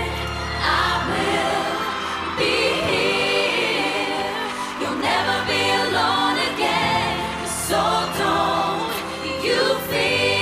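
Female pop vocal group singing a sustained passage together in close harmony, all five voices at once, over a held low accompaniment.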